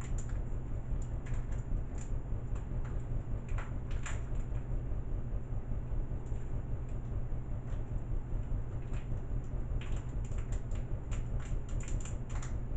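Small sharp clicks and crackles of hands working open a plastic packet of screws, coming in bunches, busiest near the start and again near the end. A steady low hum runs underneath.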